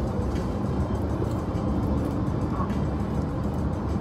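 Steady low road and engine rumble of a car driving at speed, heard inside the cabin.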